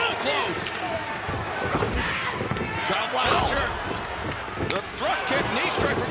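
Wrestlers' bodies hitting the wooden-boarded ring canvas with sharp, booming thuds, several coming close together near the end, over an arena crowd shouting and cheering.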